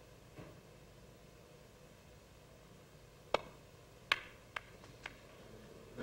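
Snooker balls: a faint tap of the cue on the cue ball just after the start. About three seconds later comes a sharp ball-on-ball click as the cue ball runs into the pack of reds, and then three lighter clicks as the balls knock together over the next two seconds.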